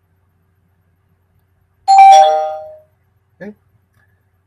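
Two-note ding-dong doorbell-style chime, a higher tone then a lower one, sounding once about two seconds in and ringing out for under a second.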